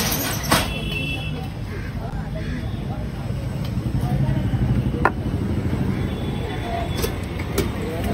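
Steady low rumble of road traffic, with background voices and a few short sharp clicks.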